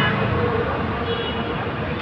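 Busy street noise: steady traffic with people talking in the background.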